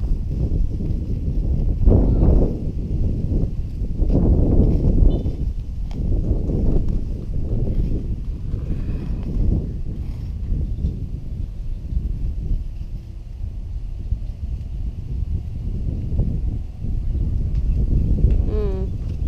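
A hand digger scraping and chopping into wood-chip mulch and sandy soil, with crunching and rustling of the chips, in uneven bursts, the loudest about two seconds in and again around four to five seconds in.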